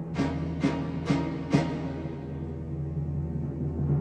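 Orchestral film score: four timpani strokes about half a second apart over a held low chord, after which the chord sustains on its own.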